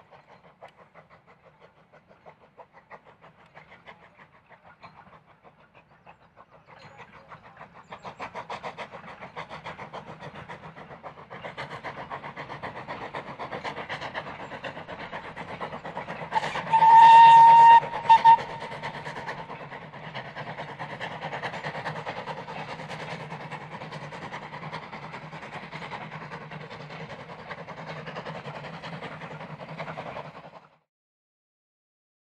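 Steam locomotive working a train past, its exhaust chuffing in quick beats that grow louder as it approaches. About halfway through it sounds its steam whistle: one long blast, then a short one.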